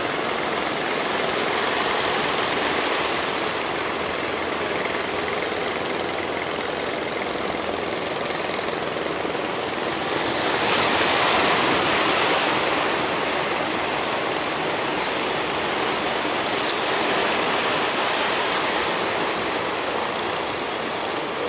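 Steady rush of sea surf and breaking waves, swelling louder for a few seconds about halfway through.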